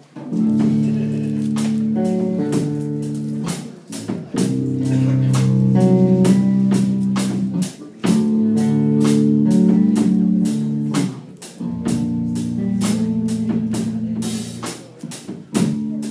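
Live drum kit and electric bass guitar playing the instrumental intro of a slow soul tune: sustained low bass chords in phrases that break about every four seconds, over a steady beat of regular cymbal and drum strokes.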